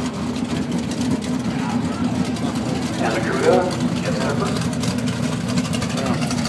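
Steady low rumble of drag-race car engines running at the strip, with brief voices about three seconds in.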